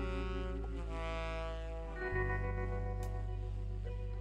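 Live band instrumental passage: a tenor saxophone plays long held notes over a sustained low bass, with the harmony changing about halfway through.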